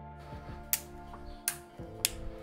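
Two sharp plastic clicks, about three-quarters of a second apart, with a few fainter ticks, as the LG K41S phone's clip-on back cover is pressed and snapped into place, over steady background music.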